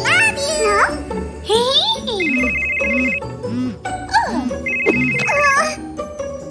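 Phone ringtone ringing twice, each ring a fast-pulsing high tone about a second long, over background music and a cartoon character's wordless vocal sounds.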